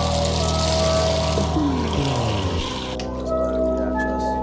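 Water poured from a cup over long hair and splashing into a bathtub, a steady pour of about three seconds that stops suddenly.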